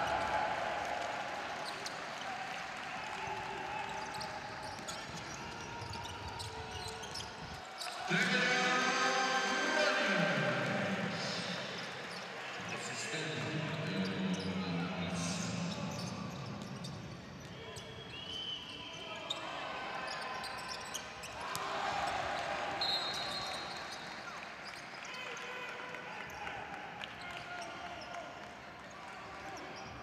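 Basketball dribbled on a hardwood court during live play, repeated ball bounces amid arena voices. A sudden loud burst rises about eight seconds in and lasts about two seconds, and a brief high steady tone sounds near twenty-three seconds.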